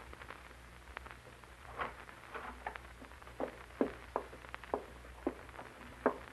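Quiet sound-effect footsteps from an old radio drama, single steps at an uneven pace that come about twice a second from about three seconds in, over a steady low hum.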